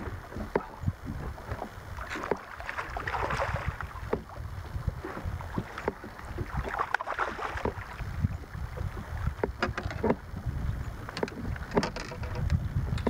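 Wind buffeting the microphone and water slapping a small boat's hull, with scattered sharp clicks and two short swells of hiss about three and seven seconds in, while a hooked bass is played on rod and reel.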